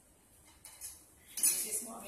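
Cutlery and dishes clinking: a few light clinks of a spoon against plates, with the loudest clatter about one and a half seconds in.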